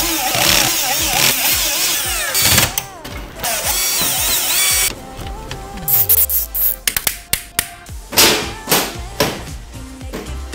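Cordless drill-driver running in short spells, its pitch rising and falling, for about the first five seconds, then lighter clicks and knocks of hands working in the case, all under pop music.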